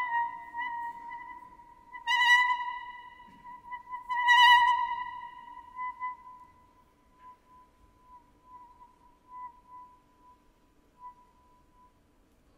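Solo clarinet holding one high note, swelling twice, about two and about four seconds in. It then sustains the note very softly, dying almost to nothing toward the end.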